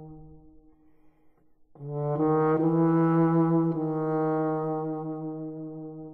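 Euphonium with brass band playing a slow passage: a held note dies away into a short pause, then a new phrase enters about two seconds in, steps up through a few notes and settles into a long held note that fades out near the end.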